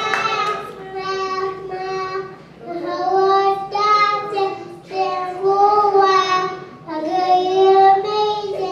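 A three-year-old child singing into a microphone through a PA: a string of long held notes, each about a second, with short breaks for breath between them.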